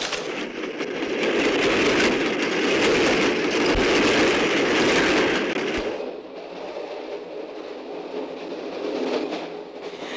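Passenger train running, a steady rumble and rattle heard from inside the carriage. It is louder for the first half and drops in level about six seconds in.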